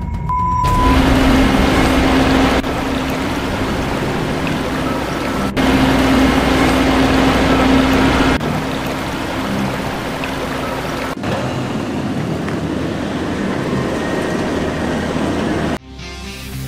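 Snow blowers throwing snow: a loud, steady rushing spray with machine running underneath. It changes abruptly every few seconds and cuts off just before the end.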